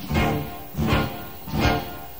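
Live rock band with drums, bass, guitar and keyboards playing an instrumental gap between vocal lines, heard straight off the mixing desk. Loud accented full-band hits land about every 0.8 s.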